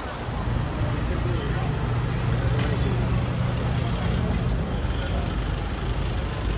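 Street traffic: car engines running close by with a steady low hum, under the noise of a busy street and voices of passers-by.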